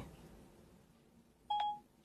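A single short electronic beep from a phone, one steady pitch, about one and a half seconds in, just before the voice assistant replies.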